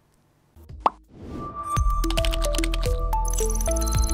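Closing station jingle: after a moment of near silence, a short pop about a second in, then electronic music with a deep bass, quick plucked notes and high glittering ticks.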